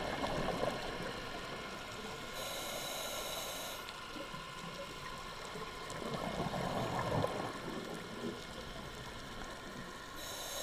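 Scuba diver breathing through a regulator underwater: a rush of exhaled bubbles at the start, a hiss of inhalation from about two and a half to four seconds in, then another burst of exhaled bubbles about six seconds in.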